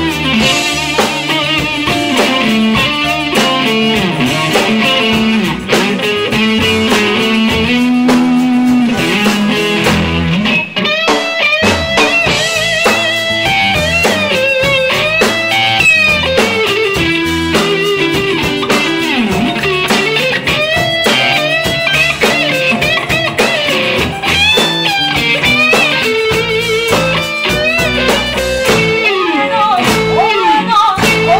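Live blues-rock band playing an instrumental passage led by a Stratocaster-style electric guitar, its notes often bending up and down in pitch, over electric bass and drum kit.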